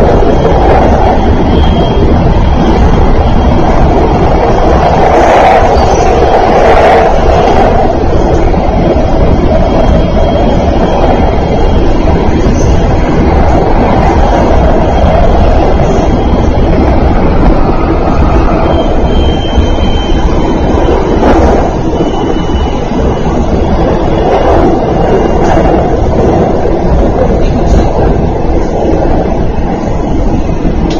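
Running noise of a Thunderbird limited express electric train at speed, heard inside the passenger car: a loud, steady rumble of wheels on rail.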